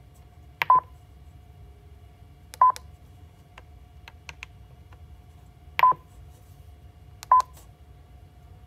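Mindray BeneHeart D3 defibrillator's control knob being pressed to select menu items: four short electronic beeps, each with a click, spaced irregularly about one to three seconds apart.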